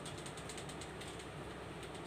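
A pen scratching on ruled paper in a quick series of short strokes as a word is handwritten.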